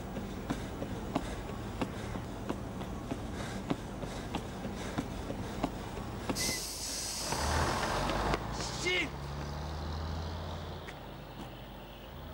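Running footsteps at about one and a half a second over a steady low hum. About six seconds in a loud hiss, then a low engine drone of a bus pulling away from the stop, dying down near the end.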